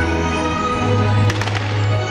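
Music with a strong bass line playing throughout, with a quick run of sharp firework cracks a little past halfway.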